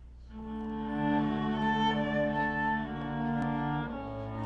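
Orchestral bowed strings, violin among them, come in with a sustained chord about a third of a second in. They hold it steadily and move to new notes near the end, over a faint low electrical hum.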